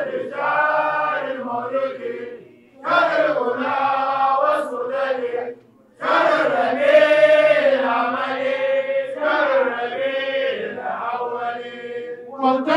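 A man chanting an Arabic Mawlid qasida unaccompanied, in long melodic phrases, with two short breaks for breath about three and six seconds in.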